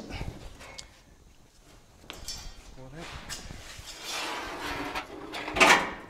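A 1953 Oldsmobile steel dash being worked out of a car's interior by hand: light knocks and scuffs of sheet metal against the body, with a louder scrape near the end.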